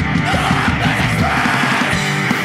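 Fast hardcore punk with distorted guitars and shouted vocals. The deep bass drops away near the end.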